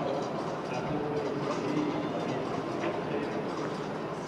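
Horse cantering on arena sand, its hoofbeats coming in a rough rhythm over a steady background hum of the arena.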